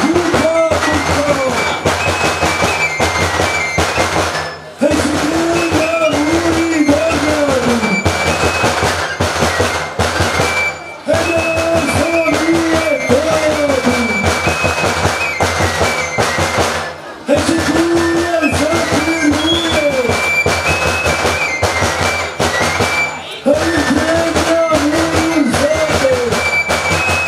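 Music for a Romanian bear dance: drums keep a steady, fast beat under a high tune on a small shepherd's flute. A lower melodic phrase of rising and falling notes comes back about every six seconds.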